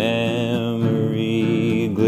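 A man's deep voice holding one long sung note, wavering slightly in pitch, over acoustic guitar.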